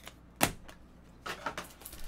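A sharp click about half a second in, then a few softer clicks and rustles: small objects being handled at a tabletop.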